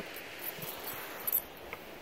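Steady outdoor background noise with a few faint rustles and small clicks, no clear single source.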